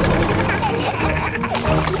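Cartoon tractor engine chugging and its wheels splashing through mud, over background music.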